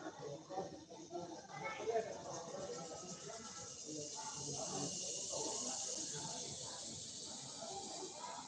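A person's voice talking quietly, with a steady high hiss behind it that grows stronger from about two seconds in.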